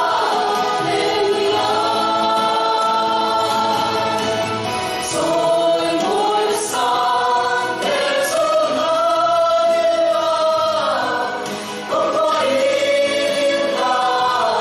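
A small mixed group of women and men singing together in harmony through handheld microphones, with long held notes.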